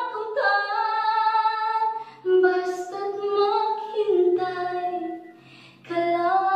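A woman singing long held notes that step from pitch to pitch, with no clear words, breaking off briefly near the end before the next phrase.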